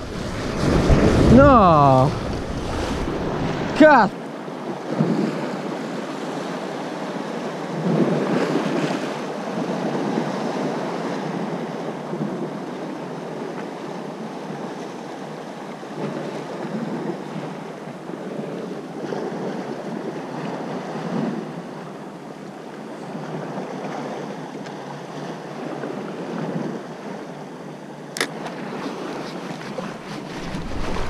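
Wind blowing across the microphone over the rush of sea waves, loud and gusty for the first few seconds, then a steadier, lower wash. A single sharp click comes near the end.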